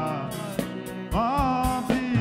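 Worship band music with drum beats and a melody line that slides between notes.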